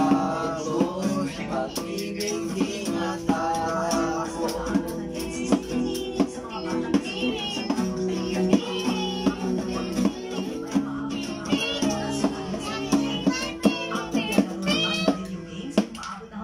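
Acoustic guitar strummed in steady chords while voices sing along, with hand strikes on a plastic container serving as a makeshift drum.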